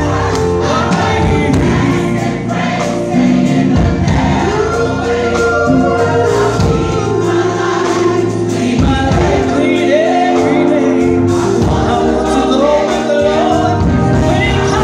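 Gospel choir singing a song, led by a female soloist on a microphone, over sustained low instrumental notes and a steady beat.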